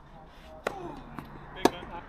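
Tennis ball struck by racquets during a rally: three sharp pocks within about a second, a fainter one in the middle and the last the loudest, with a short voice sound just after the first.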